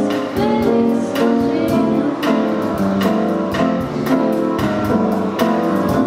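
Live acoustic band music led by a nylon-string classical guitar, plucked and strummed to a steady beat.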